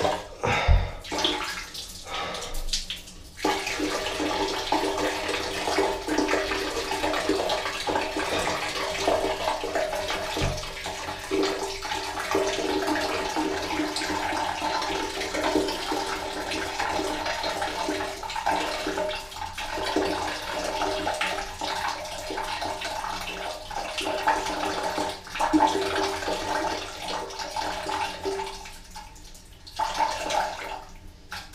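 Water running steadily, with a steady hum underneath. A few knocks come in the first few seconds, and the running thins out near the end.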